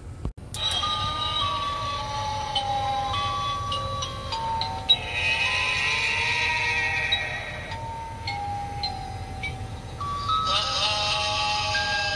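Music: a slow melody of long held notes stepping up and down in pitch. A raspy hiss rises over it for a few seconds about five seconds in and returns near the end.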